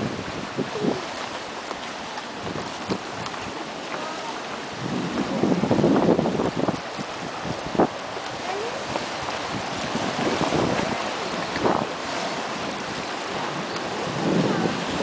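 Sea surf washing and sloshing into a rocky seawater pool, with wind buffeting the microphone; the water swells louder about five seconds in and again near ten seconds. A few brief sharp knocks stand out over it.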